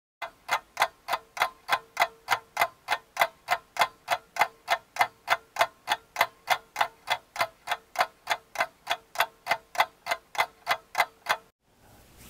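Clock ticking sound effect: steady, evenly spaced ticks at about three and a half a second over a faint steady tone. The ticks stop just before the end.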